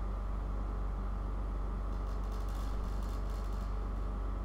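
Steady low background hum with an even hiss, and a short run of faint high ticks about halfway through.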